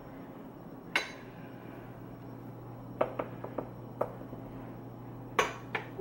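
A measuring cup knocking and clinking against a stainless steel mixing bowl as flour is tipped in, a handful of sharp knocks a second or two apart, with a quick cluster about three seconds in and a double knock near the end. A low steady hum runs underneath.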